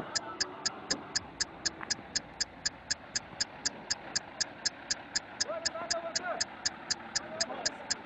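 Steady ticking-clock sound effect, about four sharp ticks a second, over faint background voices.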